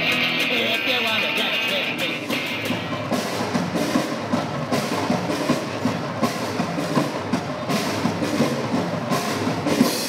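A small band playing: electric guitar, snare drum and double bass for about the first two seconds. Then a drum kit with cymbals is played in a steady, rhythmic pattern.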